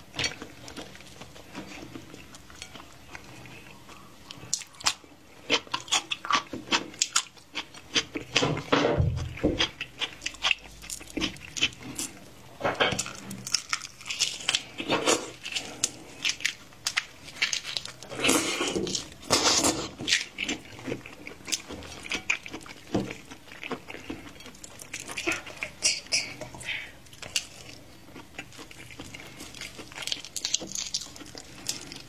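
Close-miked eating of raw red prawns: many small clicks and crackles as the shells are peeled by hand, with wet sucking and slurping as the heads are sucked out. The sucking is loudest about nine seconds in and again around eighteen to twenty seconds.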